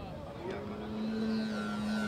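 Radio-controlled scale Husky bush plane taking off: its motor and propeller come in about half a second in as a steady drone that grows louder as it climbs away.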